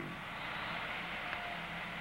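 Steady hiss with a faint low hum, with no distinct event.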